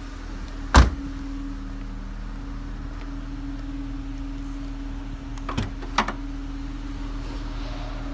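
A car's rear passenger door shut with a single loud thud a little under a second in, then two sharp clicks close together near the end as the trunk lid is released and opens, over a steady hum.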